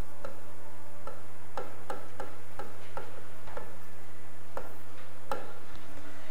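Writing strokes on a board: a string of short, irregular ticks and scrapes as the letters of a heading go down, over a steady low electrical hum.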